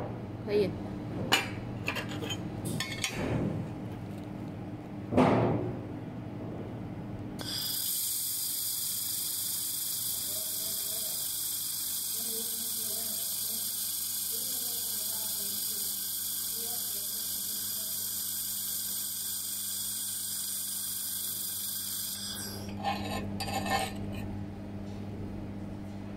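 A 2000 W handheld laser welder running a seam weld on steel plate: a steady hiss that starts about seven seconds in and cuts off sharply near the end. Before it, a few sharp clicks and knocks, the loudest about five seconds in, as the metal plates are handled.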